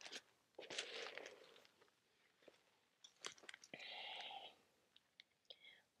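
Near silence with faint breathing: a soft breath out about a second in and another audible breath around four seconds in, with a few small clicks and rustles.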